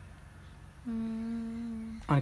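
A girl's or woman's voice humming one steady closed-mouth 'mmm' on a single held pitch, starting a little under a second in and lasting just over a second.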